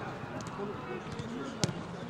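A football being struck: one sharp thud about three-quarters of the way through, with voices in the background.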